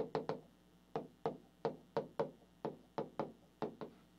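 Stylus tapping against a large touchscreen display as letters are written by hand: about a dozen short, sharp taps at uneven spacing.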